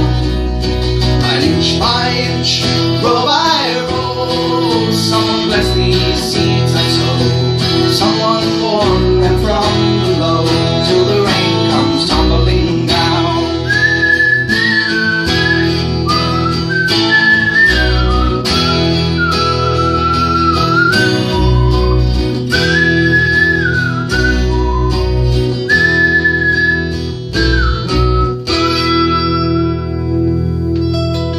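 Jumbo cutaway acoustic guitar strummed and picked in an instrumental break. From about halfway through, a high whistled melody of long held notes with small slides between them carries over the guitar.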